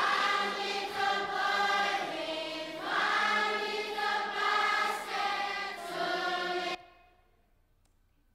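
A large group of children singing a song together in unison, the many voices cutting off suddenly about seven seconds in.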